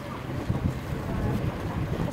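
Wind buffeting an outdoor microphone: an uneven, gusting low noise with no clear voice over it.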